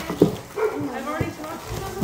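Indistinct voices talking in the background, with a short knock just after the start.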